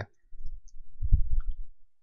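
Computer mouse handling at a desk, picked up by the microphone: low, dull knocks and rumble with a few faint clicks, strongest about a second in.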